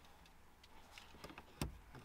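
Near silence broken by a few faint ticks, then one sharper click about one and a half seconds in, from a hand taking hold of a MK3 Toyota Supra's dashboard cigarette lighter in its socket.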